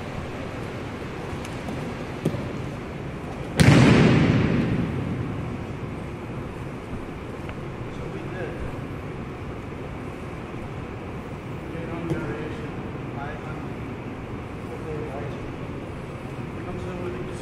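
A single heavy thump about three and a half seconds in, with a short echo in a large hall: an aikido partner slamming down in a breakfall onto the mat, against low room noise.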